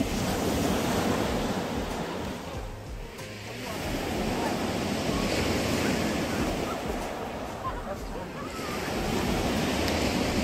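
Sea surf breaking and washing on a beach, swelling and ebbing every few seconds, with wind on the microphone.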